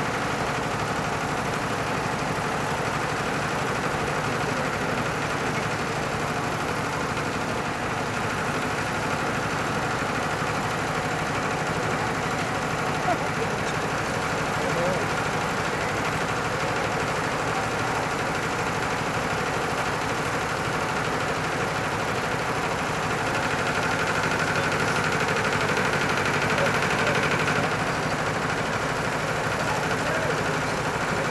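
Heavy construction machinery engines running steadily in a continuous drone, growing a little louder with a higher whine for a few seconds in the last third.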